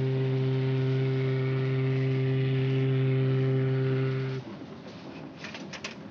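A ship's whistle sounding one long, steady, deep blast that cuts off abruptly after about four seconds. It leaves a softer hiss with a few clinks near the end.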